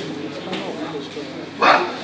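Indistinct chatter of several people, with one short loud call about three-quarters of the way through.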